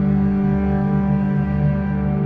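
Calm, dark cinematic instrumental music: sustained low string-like tones over a soft bass pulse that repeats a little faster than once a second.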